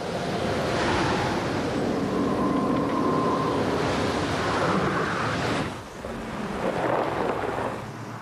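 A loud, steady rushing noise like surf or wind, dipping briefly about six seconds in and then rising again.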